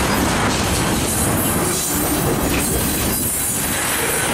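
Freight train tank cars rolling past close by: a loud, steady rumble and clatter of steel wheels on rail.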